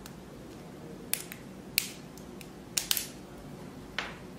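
Small hard 3D-printed resin model parts clicking and tapping as they are handled and set down on a cutting mat: about six sharp clicks, three of them in quick succession near the end.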